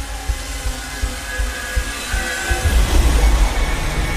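Film-trailer style sound design: a dense, deep rumble with irregular low pulses and a few held tones, swelling louder about two-thirds of the way through.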